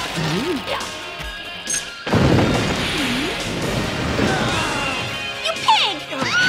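Action-film trailer soundtrack: music mixed with crash and impact sound effects. A sudden loud crash comes about two seconds in, followed by a continuing dense din.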